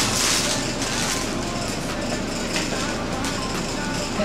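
Steady, even room noise with a few light clicks of metal spoons against cereal bowls.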